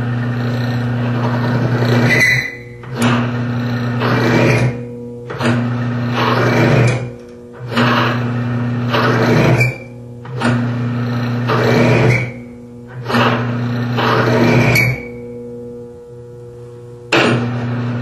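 Cross-axis lubricant test machine under repeated shock loading: a steady drive-motor hum with about six loud bursts of metal-on-metal grinding, each ending in a rising squeal. The squeal is the friction noise of the oil additive breaking down and failing under pressure.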